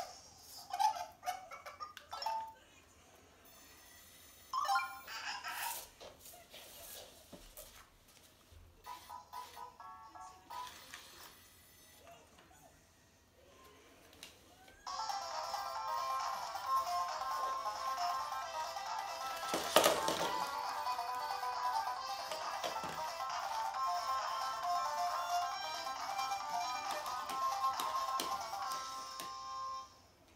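A small toy robot playing an electronic dance tune through its speaker, set going in its dance mode. The tune starts suddenly about halfway through and runs steadily until just before the end, with one sharp knock partway through. Before it, only faint scattered beeps and clicks.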